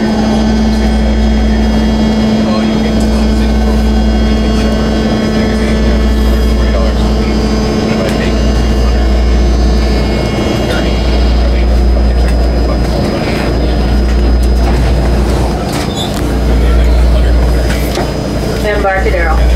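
BART train car running through an underground station, with a deep rumble and the steady whine of its electric propulsion, which fades out about two-thirds of the way through as the train slows at the platform.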